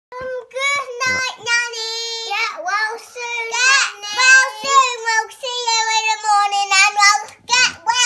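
Young children singing a song with held, steady notes.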